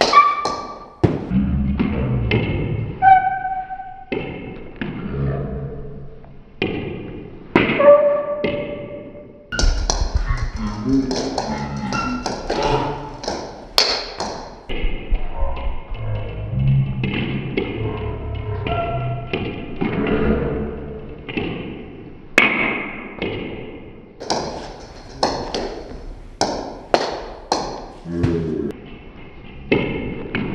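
Table tennis rally: the coach's bat with tacky rubber drives back heavily cut backspin pushes, giving a series of sharp taps of ball on bat and table every second or so, over background music.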